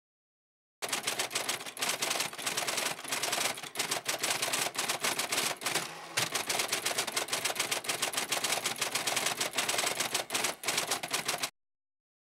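Typewriter typing rapidly, keys striking in a fast continuous clatter with a short lull about halfway through, stopping shortly before the end.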